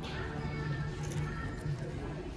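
Store background music with a pitched, wavering melody over a steady low hum, and a few light clicks about a second in.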